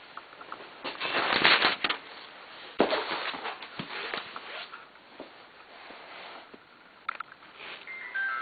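Close handling noise: rustling and scraping, loudest in a long burst a second or so in and a sharp scrape near three seconds, then scattered light clicks and knocks.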